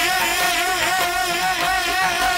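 Live qawwali music: a man's singing voice, wavering and ornamented, over the steady held notes of a harmonium.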